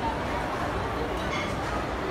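Steady restaurant background noise: a constant rumbling hum with indistinct chatter from people nearby.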